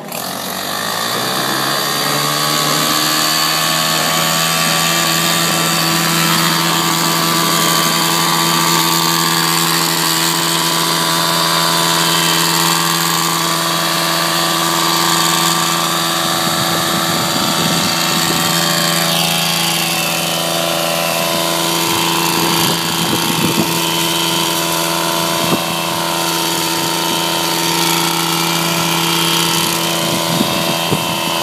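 Stihl KM 130 R KombiMotor's small 4-MIX engine revving up to full throttle and then running steadily at high speed, driving the HL-KM hedge trimmer's reciprocating blades as they cut into a leafy shrub. From about halfway, irregular crackles of foliage and stems being cut come through under the engine.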